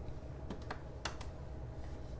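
A handful of light, sharp clicks, about five in quick succession in the first half, over a steady low hum.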